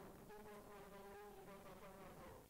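Near silence, with a faint, wavering pitched buzz.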